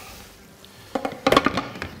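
A short run of clattering knocks, kitchenware being handled, starting about a second in.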